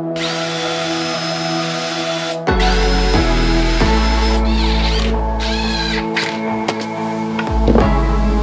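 Cordless drill running into pine boards to join a wooden bracket. It runs in two steady bursts of about two seconds each, then in several shorter bursts whose pitch wavers. Background music plays throughout.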